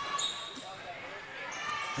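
Low court sound of an indoor basketball game: the ball bouncing amid faint voices from players and the crowd.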